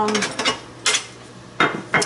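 A few sharp clicks and clacks of hard objects handled on a tabletop, the loudest about a second in, as a paint-smeared plastic palette tray is brought over and set down.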